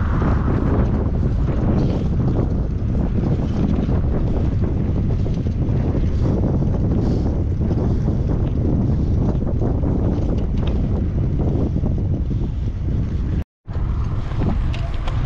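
Wind buffeting the microphone of a camera carried on a moving bicycle: a steady, loud low rumble. It breaks off for a moment near the end.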